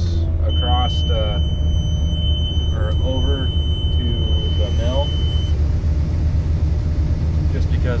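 New Holland TR88 combine running, heard as a steady low drone inside the cab. A steady high-pitched beeping tone comes in about half a second in and cuts off about five and a half seconds in.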